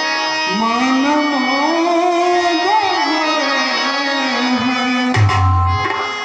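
A man singing a devotional stage song through a microphone and PA, over tabla and a steady held instrumental drone. A low boom comes about five seconds in.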